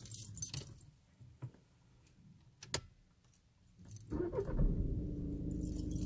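Car keys jangling and clicking at the ignition. About four seconds in, the Audi A3's 1.6 TDI four-cylinder diesel starts and settles into a steady idle.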